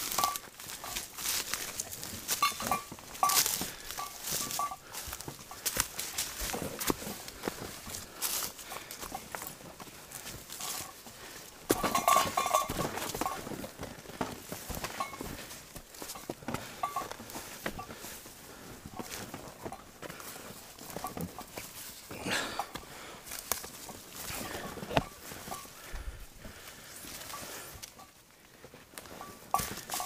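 Footsteps and the rustle of ferns and brush as a hiker carrying a loaded pack pushes along an overgrown trail, with irregular brushing and knocking of gear. A louder burst of rustling comes about twelve seconds in.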